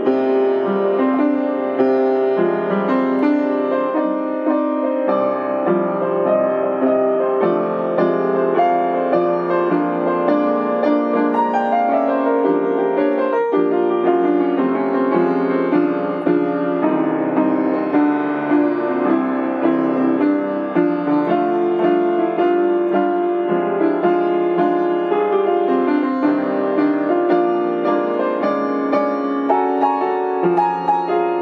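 Upright piano improvisation: a dense, unbroken flow of notes centred in the middle register, at an even loudness.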